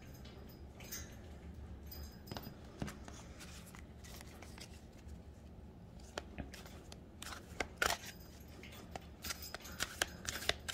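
Tarot cards being handled on a wooden table: cards slid and laid down, then a deck shuffled by hand. The sound is quiet, with scattered soft taps and rustles that get busier near the end, over a faint low hum.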